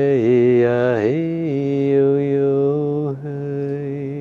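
A man chanting long held notes on wordless vowel sounds as a healing blessing. The voice wavers and dips in the first second, then rises and holds one steady note, with a brief break near the end before it carries on.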